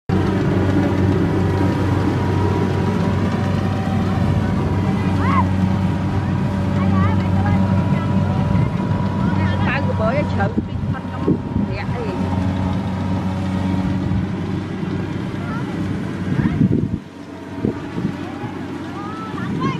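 An engine running steadily with a low, even hum, cutting out suddenly about a second before the end.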